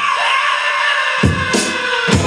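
A hip-hop beat played live on an Akai pad controller. The drums and bass drop out for about a second, leaving a held sampled sound, then kick hits come back in near the end as the beat returns.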